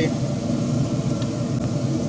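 Steady fan hum and low drone of a running Pit Boss pellet smoker.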